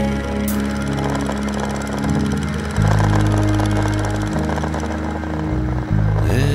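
Background music soundtrack in an instrumental stretch: sustained low chords that change about three times.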